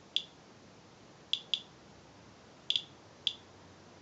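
Inspector Alert Geiger counter clicking at uneven intervals: about six short, high-pitched clicks, some in close pairs, each one a detected radiation count. The display reads 0.089 µSv/hr, close to the normal background rate of about 0.08.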